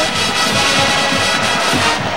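A brass band playing, with stadium crowd noise underneath.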